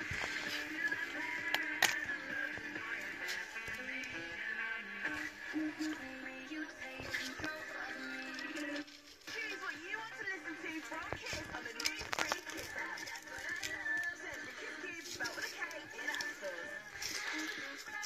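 Background music with a voice, at a moderate level, briefly dipping about halfway through.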